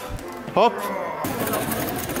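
A man's voice calling out "hop" once, a short call that rises and falls in pitch, over a steady background of outdoor noise.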